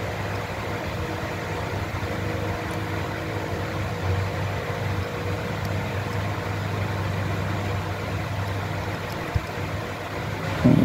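A steady machine hum with a constant low drone, and a single sharp click near the end.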